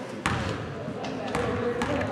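A basketball bounced three times on a hardwood gym floor, each bounce a sharp thud with a short echo, as the shooter dribbles at the free-throw line before the shot.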